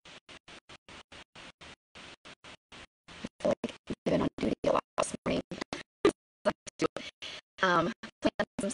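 A woman's voice broken up by rapid audio dropouts, so that her speech comes through in choppy fragments about six times a second with silent gaps between them. It is faint for about the first three seconds and louder after that.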